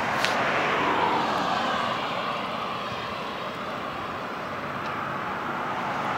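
Passing vehicle noise, a steady rushing sound that is loudest at the start and slowly fades.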